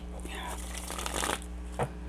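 A tarot deck being shuffled by hand: a soft, irregular rustle of cards, with a short tap near the end.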